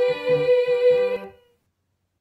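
Choristers' voices holding the final note of a sung piece over lower moving notes, cutting off abruptly about a second and a half in, followed by silence.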